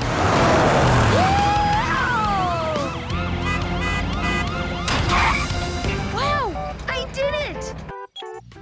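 Cartoon police cruiser siren wailing in quick repeated rises and falls, over engine noise and background music, with sliding whistle-like cartoon sound effects rising and then falling.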